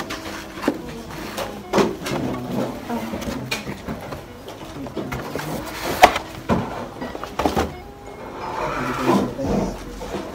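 Laptop packaging being handled: a cardboard box, its cardboard inserts, foam pads and a cloth sleeve scraping, rustling and knocking at an irregular pace, with a sharp knock about six seconds in.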